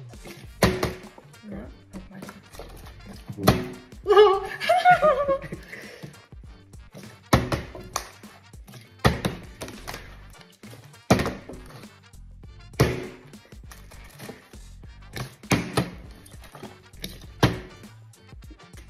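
A plastic water bottle being flipped and landing on a table again and again, about eight thunks roughly two seconds apart, with a brief stretch of a voice a few seconds in.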